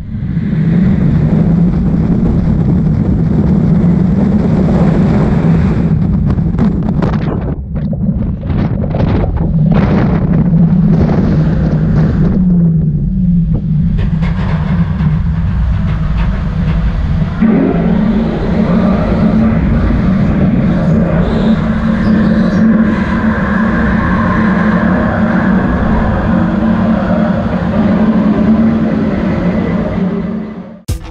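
Launched roller coaster ride heard from the front seat: a loud, steady rumble of the train running on its track, with rushing air. Between about six and thirteen seconds in the noise cuts in and out several times.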